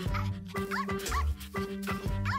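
A small dog giving a few short, high yips over upbeat background music with a steady beat.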